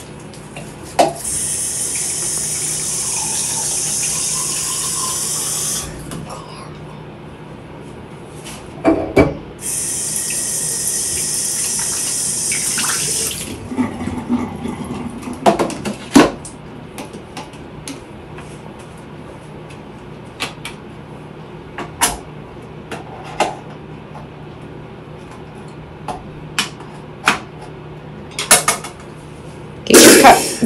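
Bathroom sink tap running into the basin twice, a steady rush of water for about five seconds and then about four seconds. Light clicks and knocks follow at the sink.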